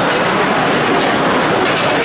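Steady, loud din inside a hockey arena during play: crowd noise and on-ice activity blended together, with no single event standing out.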